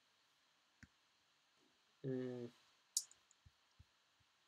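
A few small clicks at the computer while code is navigated. There is a soft click near the start, a sharp click about three seconds in, and a few faint ticks after it. A short hummed 'hmm' comes just after two seconds.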